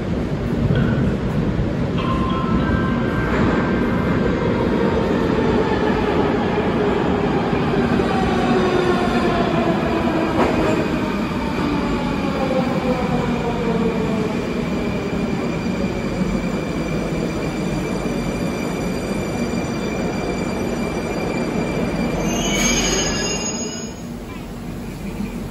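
Moscow metro 81-740/741 articulated train running into a station and braking: several whining tones from its electric traction drive fall steadily in pitch as it slows, over the rumble of the wheels. A brief high squeal comes near the end as it draws to a stop.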